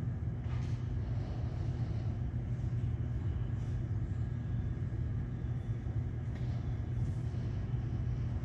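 Steady low rumbling hum of the church's background room noise, unbroken and even in level, with a few faint soft sounds over it.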